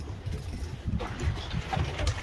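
Low, uneven rumble of a fishing boat at sea, with wind and water noise.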